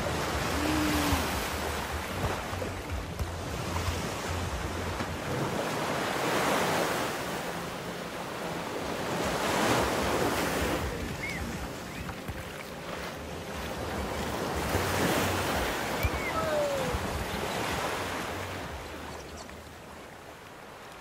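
Surf washing onto a sandy beach, the hiss of the waves swelling and fading every few seconds, with some wind on the microphone.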